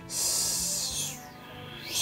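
Soft background music with a high-pitched hissing noise over it. The hiss is strongest for about the first second, fades, then returns near the end.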